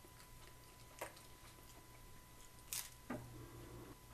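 Faint chewing of a piece of dense, unleavened flour-and-water bread, with a few soft mouth clicks about a second in and near three seconds.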